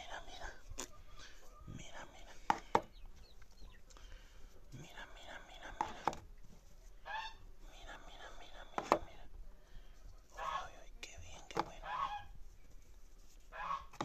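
Hen's eggs being set one by one into a plastic egg carton, giving several sharp clicks, while a broody bantam hen calls on and off.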